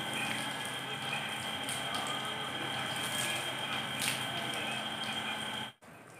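Water spraying from a thumb-pinched garden hose onto a hanging carpet, a steady hiss and patter, rinsing the detergent out of the pile. It cuts off suddenly near the end.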